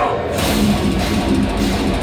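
Live deathcore band playing at full volume: heavily distorted electric guitars over bass and drum kit. The cymbals drop out for a moment right at the start, then the full band carries on.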